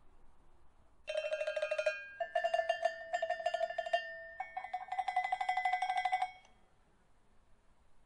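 Hanging metal chimes on an outdoor musical frame struck rapidly over and over with a beater. The strikes come in a few quick runs, the note stepping slightly higher with each run, and then stop about six seconds in.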